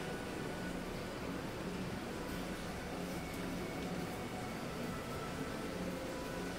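Steady room noise: an even hiss with a low hum, no distinct events.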